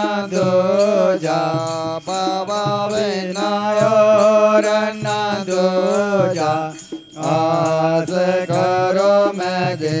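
Hindu devotional aarti to Shiva, sung with instrumental accompaniment holding a steady low note and a regular beat of about three strokes a second. The singing breaks off briefly about seven seconds in, then resumes.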